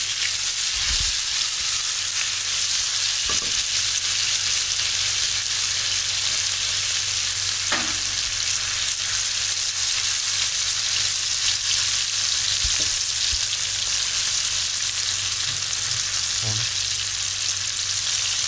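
Chopped onions frying in hot oil on a high flame, with a steady sizzle, while a spatula stirs them around the pan.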